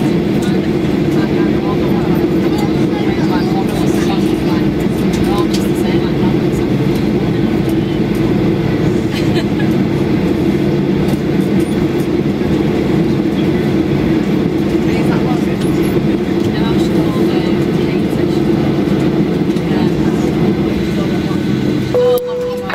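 Steady drone inside the cabin of a Boeing 737-800 taxiing after landing, from its CFM56 turbofan engines running at taxi power, with faint passenger chatter underneath.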